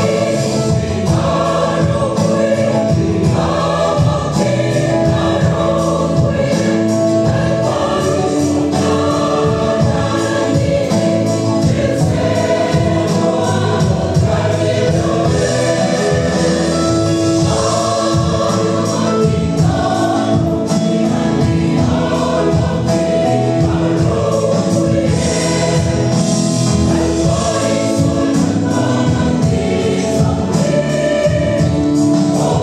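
Large mixed choir of women and men singing a hymn in Mizo, at a steady, full volume.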